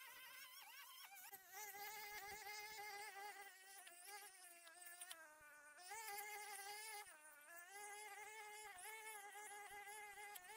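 Faint, steady buzz of a brush cutter's small engine running at high speed, its pitch dipping briefly a couple of times, near the middle and again a little later, as the cutting head bites into the weeds.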